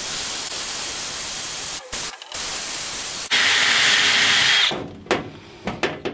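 Power drill drilling out a rivet in a metal pack-frame stay. It runs in two spells with a short pause between them, then a third, louder spell with a thin high whine, and winds down about five seconds in.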